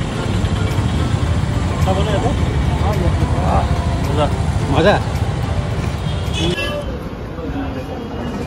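Steady street traffic rumble from motorbikes and cars, with voices nearby. About six and a half seconds in it gives way to the quieter sound of a room indoors.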